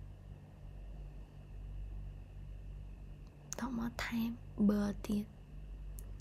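Steady low room hum, then a woman speaking softly close to the microphone from about three and a half seconds in.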